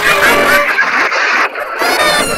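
Several clips' sound tracks playing over each other at once: a dense jumble of music and squeaky, pitched-up cartoon cat voices and squawks, dipping briefly about one and a half seconds in.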